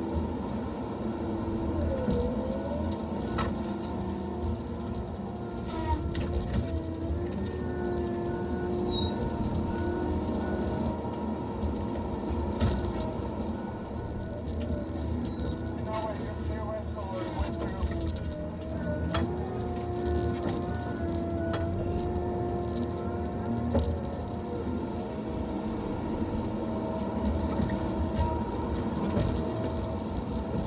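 Tigercat LX870D feller buncher working: diesel engine and hydraulics running under load with the felling head's disc saw spinning, a steady whine that sags and recovers in pitch a couple of times as it cuts. A few sharp cracks of wood and limbs break through.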